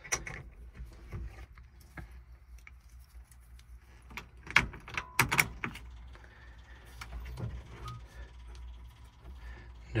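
Scattered clicks and knocks of hands working in a truck cab: keys jangling on the dashboard and controls and wiring being handled. The loudest knocks come about four and a half to five and a half seconds in, over a low steady rumble.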